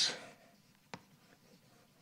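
Chalk writing on a blackboard: faint scratching, with one sharp tap of the chalk on the board about a second in.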